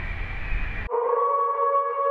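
Faint room noise, then about a second in a wolf-howl sound effect starts suddenly: one long, steady note that runs past the end.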